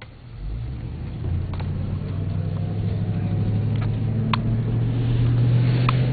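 Car engine and road noise building as the vehicle pulls away and gathers speed, heard from inside the car: a low, steady hum that grows steadily louder.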